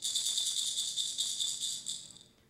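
A percussion rattle shaken rapidly and evenly, a bright, high jingling that starts suddenly and cuts off near the end.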